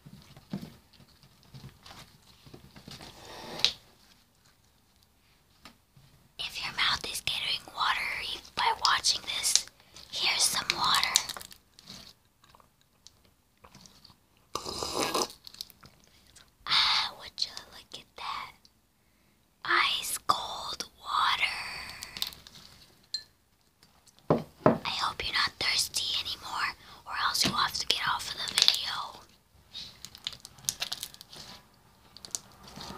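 Close whispering comes in several bursts with quiet stretches between them, over the sticky sounds of a lump of pink slime being squeezed and poked by hand.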